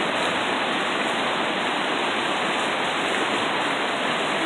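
Steady rushing of a fast-flowing creek tumbling over rocky rapids, close by.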